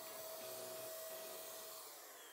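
Wagner handheld electric paint sprayer running while spraying a coat of paint: a faint, steady hum and hiss with a steady tone that cuts off near the end.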